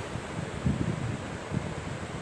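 Steady background hiss with a few soft, low puffs of air on the microphone.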